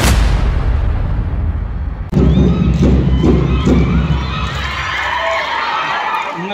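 Logo intro sting: one loud impact hit that rings out for about two seconds. About two seconds in it cuts abruptly to live outdoor sound, a steady low rumble with the voices of a crowd of children.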